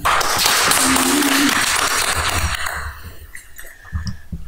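Audience applauding, dying away after about three seconds.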